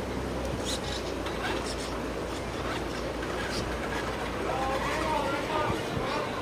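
Indistinct background voices of people talking over a steady outdoor noise, with a few short clicks.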